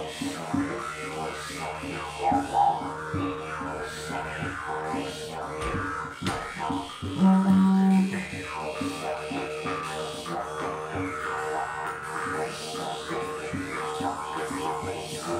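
Didgeridoo, a long PVC-pipe one, droning with a quick rhythmic pulse, with jaw harps twanging and wavering over it. One louder held low note sounds for about a second a little after seven seconds in.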